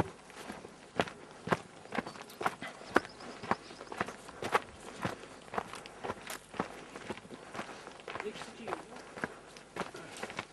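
Footsteps of a person walking down a mountain path, steady and even at about two steps a second.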